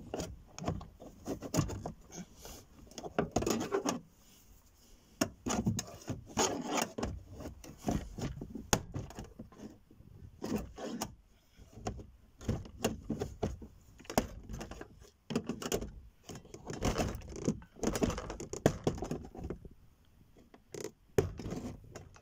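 Screwdriver prying at the edge of a 2008 Nissan Qashqai's plastic door card, with irregular scraping and sharp clicks as the trim clips are levered out of the metal door.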